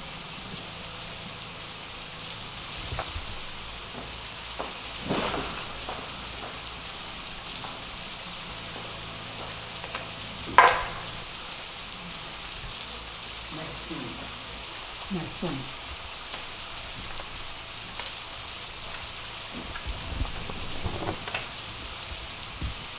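Steady rain falling, an even hiss, with one short sharp sound about ten seconds in.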